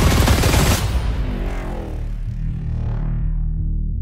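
Action-movie trailer soundtrack: a loud, dense burst of rapid crackling action effects in the first second, dying away into a low droning score.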